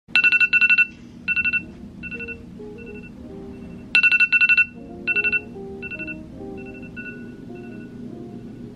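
iPhone alarm going off: rapid clusters of high beeps, each burst followed by fainter repeats that fade, the pattern starting over about four seconds in.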